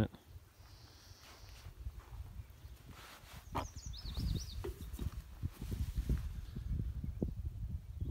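A bird gives a quick run of high, falling chirps about three and a half seconds in, over an irregular low rumble on the phone's microphone that grows stronger through the second half.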